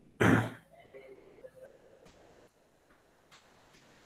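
A man coughs once, a short sharp burst, followed by faint low murmuring and a few light clicks.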